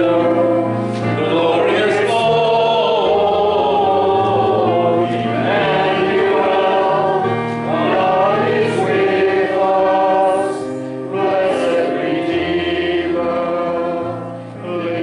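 Congregation singing the sung benediction, a slow hymn in held notes that change every second or two.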